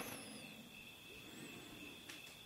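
Near silence: faint room tone with a steady, faint high-pitched tone.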